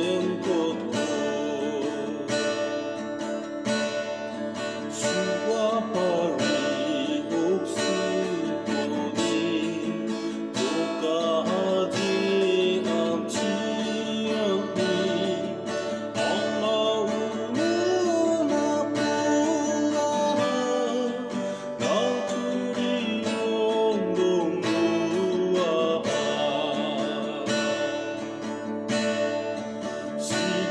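A man singing a Garo-language hymn solo while strumming an acoustic guitar in a steady rhythm.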